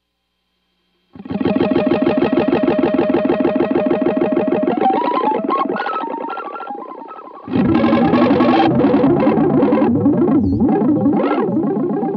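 Electric guitar through a Red Panda Raster 2 digital delay pedal. After about a second of silence a held note breaks into rapid, stuttering repeats that climb in pitch and fade out, and a second, busier phrase starts about seven and a half seconds in.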